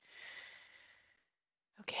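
A person sighing: one breathy exhale of about a second that fades away.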